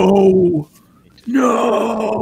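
Only speech: a man's voice drawing out "no" twice in protest, each held for about a second, with a pause between them.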